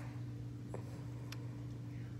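A steady low mechanical hum, with two faint clicks a little under a second apart.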